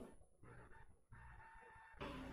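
Near silence: a gap while the clip is rewound.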